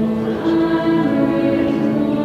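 Choir singing a hymn with long held notes.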